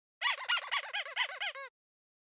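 Squeaky cartoon sound effect: a quick run of about seven high squeaks, each rising and falling in pitch, stopping abruptly near the end.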